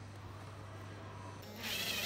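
Low background hum, then about one and a half seconds in a power drill starts up, its whine rising in pitch and then holding.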